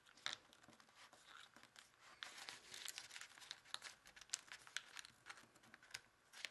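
Faint crinkling and rustling of a square of kami origami paper being folded and pressed flat by hand, with a steady scatter of small crackles.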